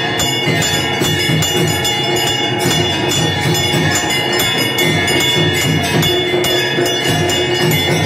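Temple bells ringing continuously during a Hindu puja, with rapid, even strikes several times a second over a sustained metallic ring, typical of the bells rung through the lamp offering (aarti).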